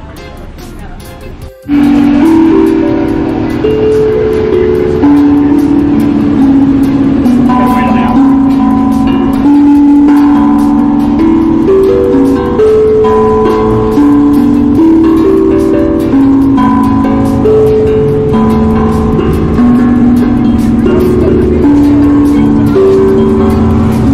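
Steel tongue drum struck with a mallet, a slow run of single notes, each ringing on into the next; it starts abruptly about a second and a half in.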